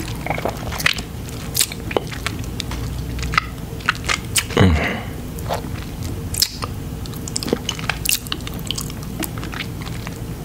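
Close-miked mouth sounds from eating crunchy chips: irregular sharp, wet clicks and smacks of the lips and tongue, with chewing. About four and a half seconds in comes a louder short, low hum that drops in pitch.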